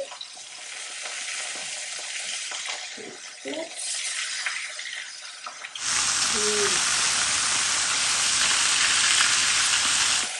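Chicken breasts sizzling in a hot, oiled cast iron grill pan. The hiss is steady and fairly faint at first, then much louder from about six seconds in.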